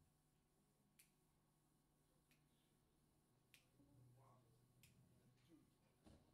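Near silence: faint room tone with three brief, faint sharp clicks.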